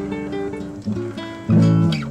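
Background acoustic guitar music, plucked and strummed notes.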